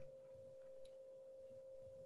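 Near silence on a video-call audio line, with a faint, steady electronic tone held at one pitch.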